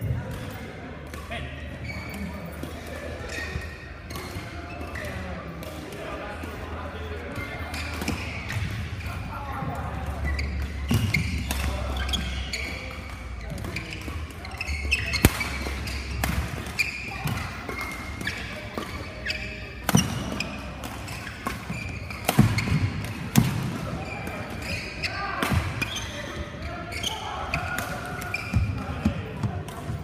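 Badminton rally: sharp racket strikes on the shuttlecock, the loudest about halfway through and a few more over the following ten seconds, with footsteps on the court floor. Background voices from other players in the hall run throughout.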